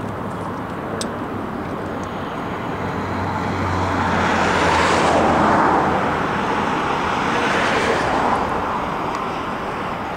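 Road traffic passing on a highway bridge: a steady rush of tyre and engine noise that swells as vehicles go by, loudest around the middle.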